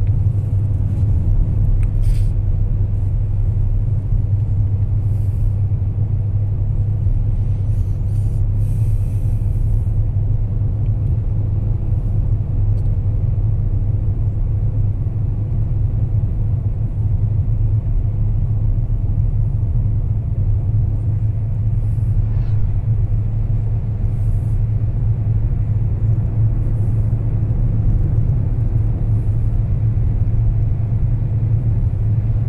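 Steady low rumble of a car travelling at highway speed, heard from inside the cabin.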